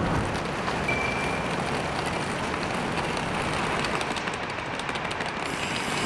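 Steady road noise of a car driving, heard from inside the cabin: even tyre and engine noise.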